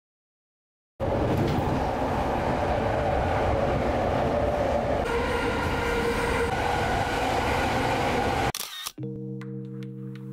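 Commuter train car running at speed, heard from inside: a loud, steady rumble and rattle that starts suddenly about a second in. Near the end it cuts off, a short mechanical clack like a camera shutter follows, and then music with steady held tones.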